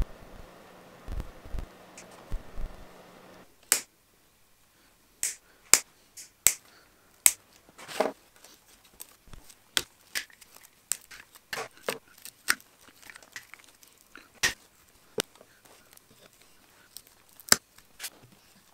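Side cutters snipping the dry twig bristles of a broom head: short, sharp snips at irregular intervals, some fifteen to twenty in all. The first few seconds hold only a faint steady hum and a few dull knocks before the snipping starts.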